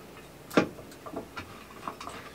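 Light clicks and knocks of hands handling the resin vat of an Elegoo Saturn S resin 3D printer as it is unfastened and lifted off: one sharp click about half a second in, then a few fainter ones.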